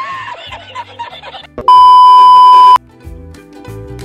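A man laughing over background music, cut off about a second and a half in by a loud, steady electronic beep lasting about a second, after which music with a regular beat plays.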